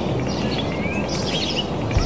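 Wild birds chirping and singing: a scatter of short, quick calls and a rising whistle, over a steady background hiss.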